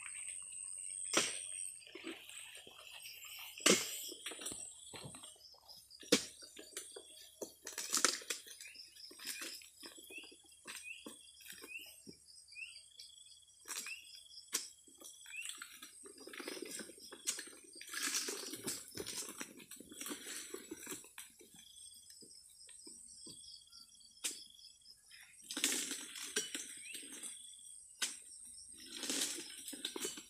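Sharp, irregular knocks every second or two as a long-poled palm chisel (dodos) is jabbed into the base of oil palm fronds and fruit-bunch stalks, with a few seconds of rustling about midway. Birds chirp and insects drone faintly in the background.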